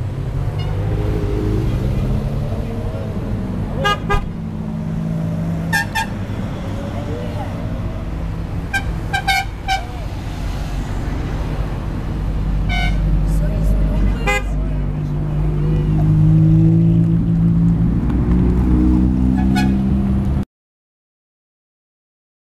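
Ferrari V8 sports cars running and pulling away one after another, their engine note growing louder in the second half, with several short toots of a car horn.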